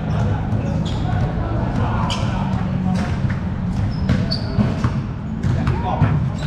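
A basketball bouncing on a hard court with sharp knocks at irregular moments, over a background of people talking.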